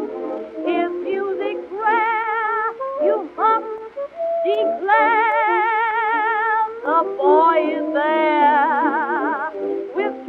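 Instrumental break of a 1920s jazz dance-band record: a lead horn plays long held notes with wide, even vibrato and short bent, sliding notes over the band. The sound is thin, with no deep bass and no high treble, as on an early record.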